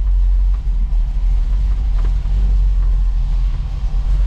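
A 1974 Dodge Challenger's V8 engine running steadily, its sound heavy and low-pitched and even throughout, with no revving.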